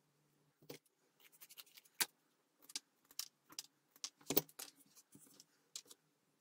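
Irregular sharp clicks and short scrapes of a utility knife working on a small cardboard craft model. They start about half a second in, with the loudest clicks about two and four and a half seconds in.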